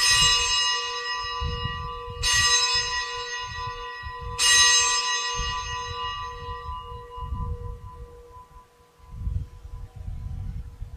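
A bell struck three times about two seconds apart, each stroke ringing on and fading slowly. It is the consecration bell rung at the elevation of the host, just after the words of consecration over the bread.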